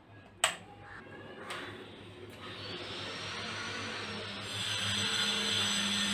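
A power-strip rocker switch clicks on sharply once, followed by a fainter click about a second later. A hiss then builds, and background music comes in near the end.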